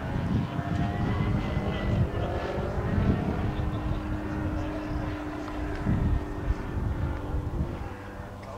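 Moki/Mark M210 35 cc engine of a giant-scale radio-controlled P-51D Mustang model running in flight overhead, driving a 20x10 propeller. Its note rises in pitch and then falls as the plane passes, over a low rumbling noise.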